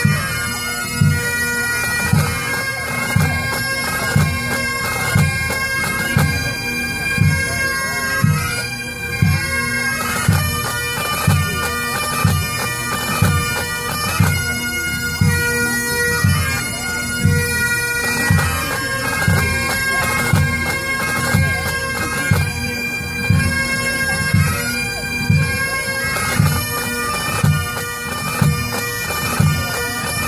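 Pipe band playing: Highland bagpipes with steady drones under the chanter melody, backed by the band's drums beating a regular pulse.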